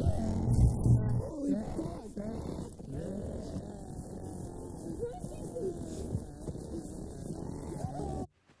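Horror-film sound design: distorted, muffled voice-like wailing with wavering pitch under music, opening with a sudden heavy low rumble in the first second.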